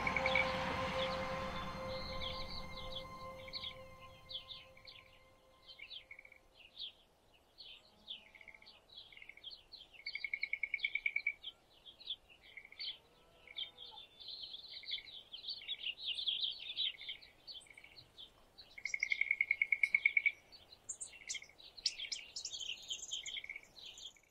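Songbirds chirping and singing in sagebrush country, with a fast, even trill heard twice, about ten and twenty seconds in. Music fades out under the birds over the first few seconds.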